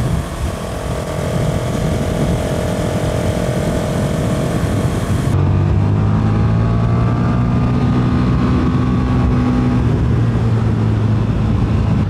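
Motorcycle engine and wind noise heard from the rider's position while cruising at steady speed. First comes the KTM 690 SMC R's single-cylinder; at an abrupt cut about five seconds in it changes to the KTM 1290 Super Duke's V-twin, which holds a steady, deeper engine note with a slight rise in pitch shortly after.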